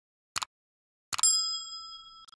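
Sound effects of an animated subscribe button: a short mouse click, then about a second in another click with a bright bell-like ding that rings on and slowly fades.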